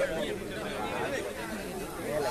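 A crowd of many people talking at once, a steady mixed chatter of voices.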